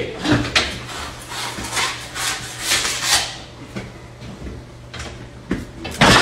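Scraping and rubbing noises from a large cut of beef being lifted and shifted by hand, a quick run of strokes for about three seconds, then quieter with a couple more near the end, over a steady low hum.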